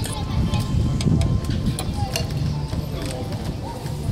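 Indistinct background chatter of people over a steady low rumble, with scattered light clicks and a few short pitched voice sounds.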